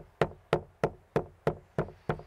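Stone pestle pounding black pepper in a stone mortar: a steady rhythm of sharp knocks, about three a second.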